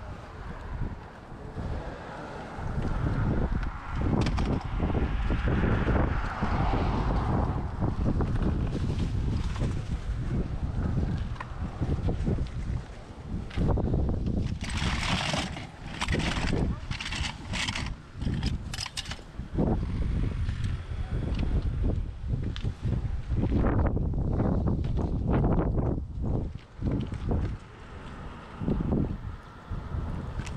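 Wind buffeting a handheld camera's microphone in uneven gusts. About halfway through come several seconds of clattering and rustling as toys in a plastic bin are handled.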